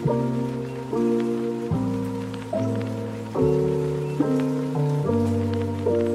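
Royalty-free chill background music: soft sustained chords that change about every second, with faint scattered ticks behind them.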